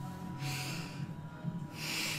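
A man breathing out hard through his nose and mouth twice in excitement, about a second apart. Faint pop music plays underneath.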